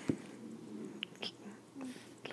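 Quiet pause in a man's narration: faint breathing and mouth noises, with a couple of small clicks about a second in and a brief low hum near the end.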